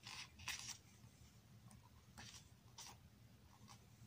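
Pages of an album photo book being turned by hand: several short, soft paper swishes, the loudest about half a second in.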